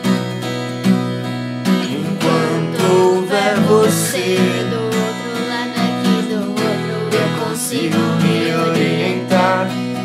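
Acoustic guitar strumming chords, with a voice singing a wavering melody over it from about two seconds in.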